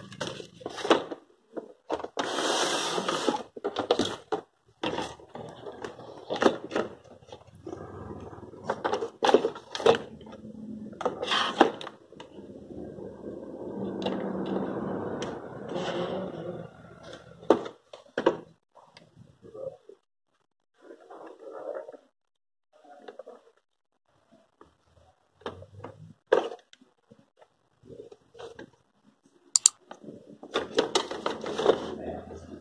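Irregular clicks, knocks and scraping from a circuit board and its wiring being handled and fitted back into a CRT television's chassis, busier in the first half and sparser with short quiet gaps later.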